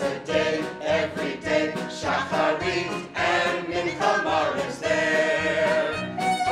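A mixed group of men and women singing a show tune together in chorus.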